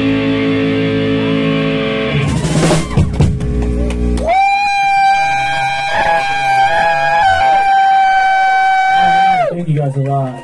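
A rock band's electric guitars ringing out the final chord of a song, with a loud crash hit about two and a half seconds in. Then a single high guitar feedback tone is held steadily for about five seconds and dies away just before the end.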